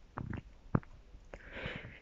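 A paper page of a picture book being turned by hand: a few soft taps and flaps of paper, then a brief soft rustle near the end.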